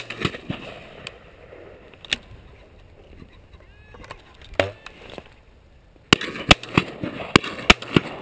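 Shotgun firing: a loud shot right at the start, then further sharp reports about two and four and a half seconds in, and a quick run of several in the last two seconds.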